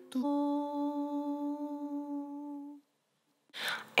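One held musical note, steady in pitch, closing the podcast's short branded jingle. It fades out after about two and a half seconds, leaving a brief silence.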